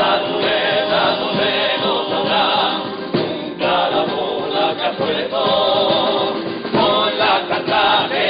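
A carnival comparsa choir of men singing in parts, accompanied by strummed guitars, with short breaks between sung phrases.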